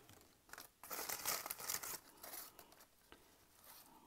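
Kraft-paper wrapping and a thin plastic plant cup crinkling and rustling as they are handled, in several short bursts through the first half.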